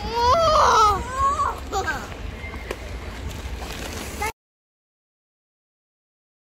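A young child crying out in wavering wails: a loud one about a second long near the start, then a shorter one. The sound cuts off abruptly about four seconds in.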